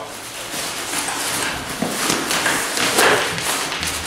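Fabric rustling and scraping as a laptop in a neoprene sleeve is forced into the hydration pocket of an Arc'teryx Brize 25 day pack, the sleeve's neoprene band dragging and catching instead of sliding in. There are a couple of louder rubs about two and three seconds in.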